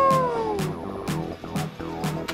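A man's excited whoop, sliding down in pitch and fading over the first half second or so, over background music with a steady beat.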